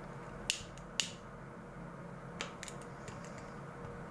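Sharp clicks of a pocket lighter being struck to burn and seal the end of a polypropylene cord: two about half a second apart near the start, two fainter ones about two and a half seconds in.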